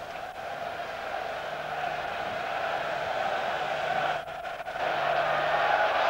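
Football stadium crowd noise, a steady murmur that swells louder about five seconds in as an attack builds toward the goal.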